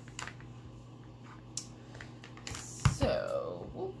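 Small clicks and rustles of rope and a plastic hot glue gun being handled, then one sharp knock about three seconds in, the loudest sound, as the glue gun is set down on the table.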